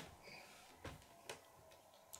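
Near silence: room tone with three faint short clicks.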